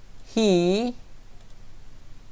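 Mostly speech: a man says a single word. Around it there are two or three faint computer clicks.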